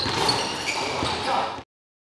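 Live sound of an indoor basketball game: players' voices and court noise echoing in a gym hall. It cuts off suddenly about a second and a half in.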